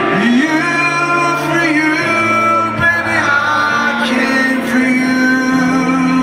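Live performance of a slow ballad: a man singing over sustained piano chords.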